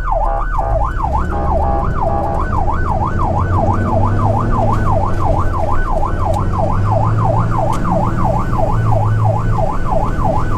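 Electronic emergency siren in a fast yelp, sweeping up and down about three times a second, heard from inside a tow truck's cab with the truck's engine droning underneath as it speeds to an emergency call.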